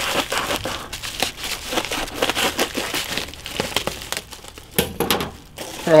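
Mailing envelope being cut open with scissors and rummaged through, its packaging crinkling and rustling in a run of short crackles, busiest near the end.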